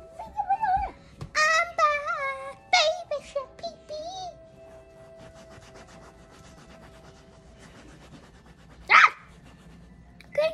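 Background music with steady held tones, over which a voice makes wordless, high-pitched gliding sounds through the first few seconds. About nine seconds in comes one short, loud rasping burst.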